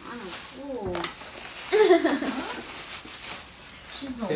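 Wordless excited vocal exclamations from women, short pitched sounds that bend up and down, the loudest about halfway in, over light rustling of tissue paper pulled from a gift bag.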